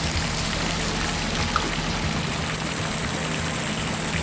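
Fountain water splashing and falling into its pool: a steady, even rushing noise, with a faint low hum underneath.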